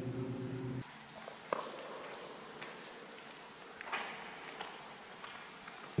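A low steady hum that cuts off abruptly under a second in, then a faint hush in a tunnel with a few soft taps.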